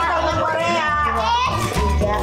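A young child's high-pitched voice over background music with a steady low beat.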